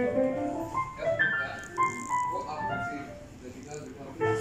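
Piano being played: a simple melody of single notes stepping up and down.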